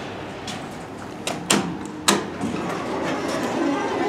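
A few sharp clicks and knocks, the loudest about a second and a half and two seconds in, then the elevator's sliding doors running open with a steady rumble.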